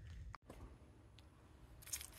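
Near silence: faint room tone, briefly cut out about half a second in.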